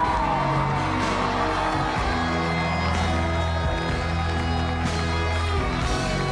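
Live band playing an instrumental passage of a pop ballad, with sustained chords over a steady bass line. At the very start a long held sung note slides down and ends.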